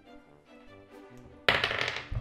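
Soft background music, then near the end a sudden loud clatter as a plastic die is thrown onto a wooden table.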